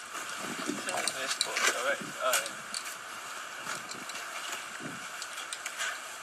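Faint, indistinct voices of people talking some way off, over a steady hiss and scattered light clicks.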